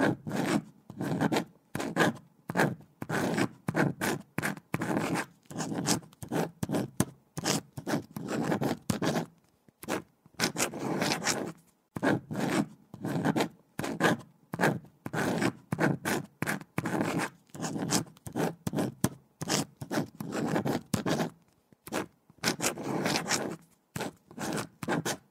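A pen writing on paper: quick scratchy strokes, several a second, in runs broken by short pauses.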